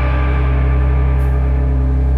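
Live rock band's amplified electric guitar and bass holding one sustained low drone, its high overtones slowly fading while the low notes stay steady.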